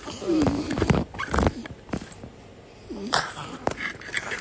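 A small dog whining in short whimpers that bend up and down, a cluster in the first second and another about three seconds in, with a thump around a second and a half.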